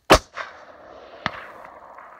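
A Savage .338 Lapua Magnum rifle fired once: a single sharp, very loud report with its echo rolling away, then about a second later a faint sharp crack of the bullet striking the distant target.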